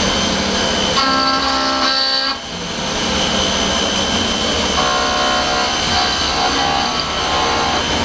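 Leadwell vertical CNC milling machine cutting metal under flowing coolant: a steady machining noise, with a shrill pitched whine of several tones rising out of it twice, about a second in and again from about five seconds in for nearly three seconds.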